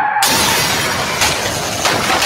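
Sound effect of a stunt crash: a squeal cuts off and, a fraction of a second in, glass shatters loudly, with further smashes and debris falling.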